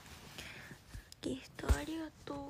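A young woman speaking softly, close to a whisper, with a single sharp knock about three-quarters of the way through.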